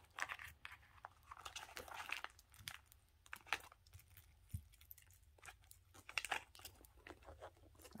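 Faint rustling and crinkling of small toiletry packets and a leather pouch being handled, with scattered light clicks and taps.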